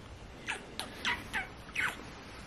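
A quick run of five kisses, each a short, high, squeaky smack that drops in pitch.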